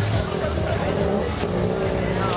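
Busy street ambience: a motor vehicle engine running close by, mixed with music from bars and people talking.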